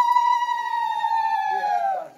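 Conch shell (shankha) blown in one long, steady note that sags in pitch and dies away near the end.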